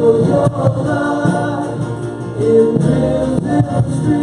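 Live contemporary worship music: a male and a female singer singing together over acoustic guitar, electric bass, keyboard and drums.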